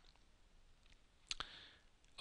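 A single computer mouse button click a little after halfway, against near silence.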